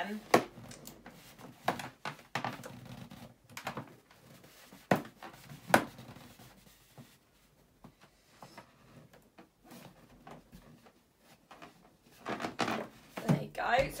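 Inflated latex balloons being handled while their necks are knotted together: scattered small clicks, taps and rubbing of rubber, mostly quiet, with a quieter stretch in the middle.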